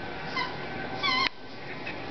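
A squeaky dog toy squeaked by a boxer puppy chewing it: a short squeak about a third of a second in, then a longer, louder squeak about a second in that cuts off suddenly.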